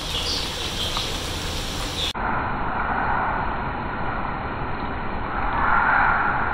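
Bitter gourd slices frying in hot ghee in a pan: a steady sizzle. It changes abruptly about two seconds in and swells louder near the end.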